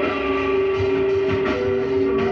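A lo-fi rock band jam recorded on a clock-radio cassette recorder: a single long note held steady in pitch, with drum hits under it.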